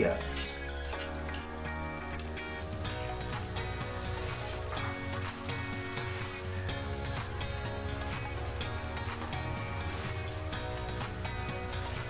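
Chopped onion and garlic sizzling in hot oil in a wok, stirred with a spatula, with background music of steady held chords underneath.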